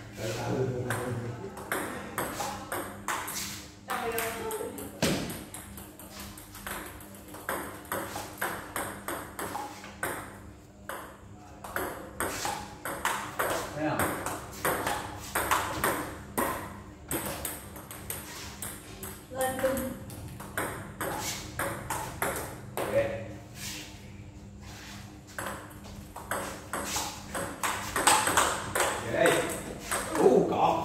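Table tennis ball clicking off paddles and bouncing on the table in repeated back-and-forth exchanges, a few sharp ticks a second, with voices now and then.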